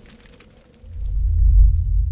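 Logo-intro sound effect: the tail of a crackle of gunshot-like clicks dies away, then a deep low rumble swells up about a second in and begins to fade near the end.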